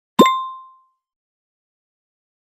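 A single cartoon-style sound effect near the start: a quick rising 'bloop' that turns into a clear bell-like ding and fades out within about half a second.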